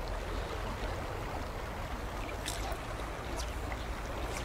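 River water flowing, a steady even rush.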